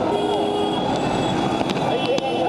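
A city bus pulling away close by: a steady running rumble with several thin, high-pitched whining tones held over it.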